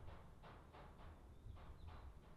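Near silence, with a few faint soft clicks.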